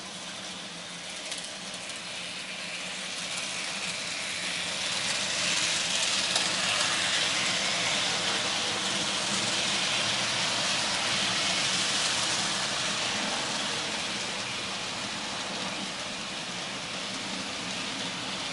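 N scale model train running along the track: a steady rolling hiss of small metal wheels on rail, with a faint motor hum, swelling toward the middle and easing off again.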